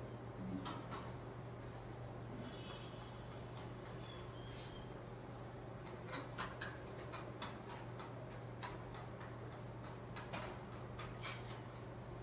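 Quiet room tone with a steady low hum, a scattering of faint clicks and ticks, and a brief faint high chirp about three seconds in.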